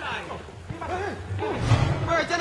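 Men's voices calling and shouting out on the pitch, short bursts of distant shouting, with a low rumble swelling near the end.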